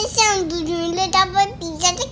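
A toddler's high-pitched voice making drawn-out, sing-song sounds with no clear words.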